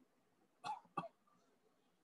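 Two brief, faint vocal sounds from a person about a second in, short and close together, such as a little cough or throat-clear.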